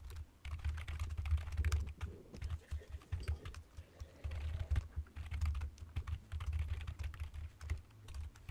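Typing on a computer keyboard: quick runs of key clicks with short pauses between them.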